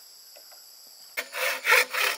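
Faint steady insect buzz, then about a second in a wooden-framed bow saw starts cutting a bamboo pole: loud rasping strokes at a quick, even pace of roughly three to four a second.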